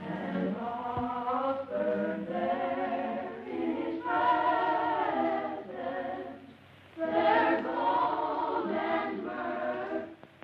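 Boys' choir singing a carol in several voices, with a short break between phrases about six and a half seconds in.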